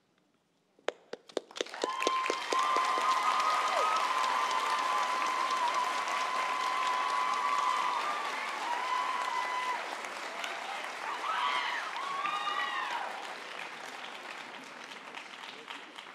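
Audience applause that starts with a few scattered claps, swells into full clapping within a couple of seconds, and tapers off near the end. Long held whoops and cheering voices ring out over it.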